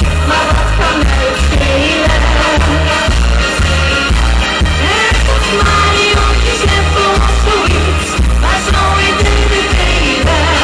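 A woman singing live into a microphone over loud pop music with a heavy, steady bass beat.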